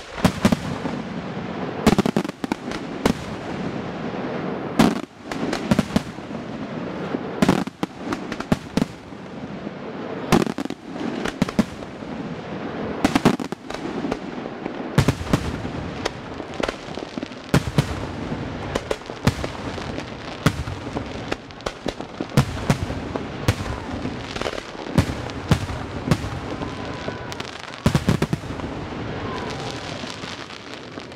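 Display fireworks: aerial shells bursting in quick, irregular succession, with sharp loud reports every second or so over a continuous rumble of smaller pops and crackle.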